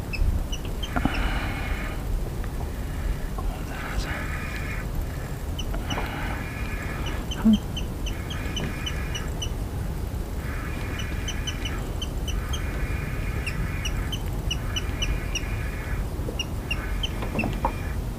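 Fishing reel being cranked in short bursts of about a second each, about eight with pauses between, as the jerkbait is worked and retrieved. Short high chirps run over it.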